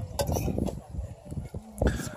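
A few light clinks of cutlery and dishes, one sharper clink near the end, over a low rumble and faint voices.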